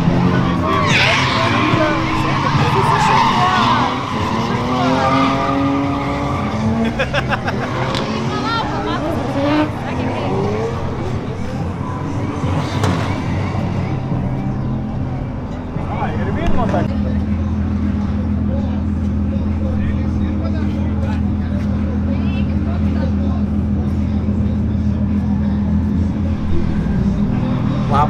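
Drift car engines revving up and down with tyre skidding over the first several seconds, then a steady low engine drone from about halfway through.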